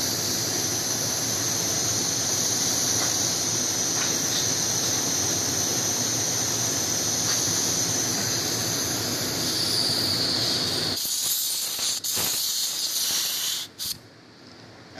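R22 refrigerant hissing out of the refrigeration compressor's service valve, a steady high-pitched hiss from gas escaping past a loose valve core while the core is tightened. The hiss changes about ten seconds in and cuts off just before the end.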